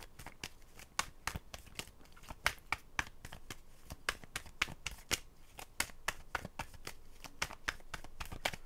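A deck of tarot cards being shuffled by hand: a steady, irregular run of quick card clicks and flicks, several a second.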